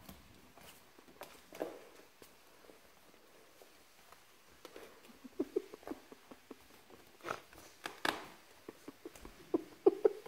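Flat mop sliding over a hardwood floor with a puppy riding on its pad: faint scattered scuffs, clicks and short squeaks, sparse at first and coming in a run in the second half.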